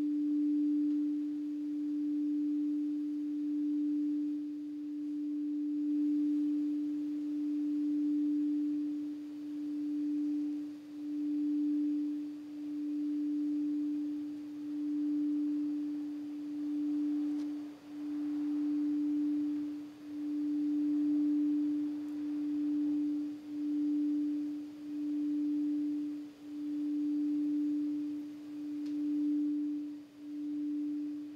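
A crystal singing bowl sounding one steady pure tone, its loudness swelling and dipping every second or two as it is kept singing.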